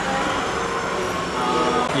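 Model subway train running through a miniature station, a steady running noise with no break, and faint voices behind it.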